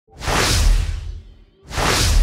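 Cinematic whoosh sound effect with a deep rumbling low end. It swells up and fades away within about a second and a half, then a second whoosh rises near the end.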